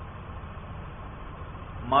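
Steady low background hum and hiss of the recording in a pause between words, with a man's speech starting again right at the end.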